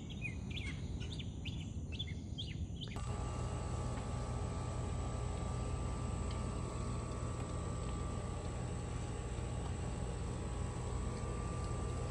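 Birds chirping for about three seconds, then a Black Max 21-inch 125cc gasoline push-mower engine starting up abruptly and running steadily.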